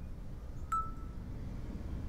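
A single short, bright chime strikes about three-quarters of a second in and rings briefly on one tone, over a steady low rumble.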